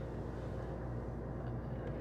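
Steady low hum of a walk-in cooler's evaporator fan running, with a couple of faint clicks near the end.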